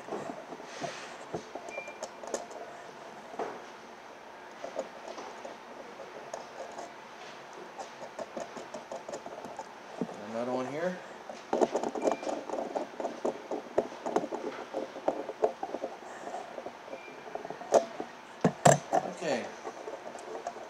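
Small metal clicks, taps and rattles of hand-tool work on a car's instrument cluster, as a ring terminal is run down onto its ground stud with a nut driver and the wires are handled. A quick run of rapid clicking comes a little past the middle, and two sharp knocks near the end.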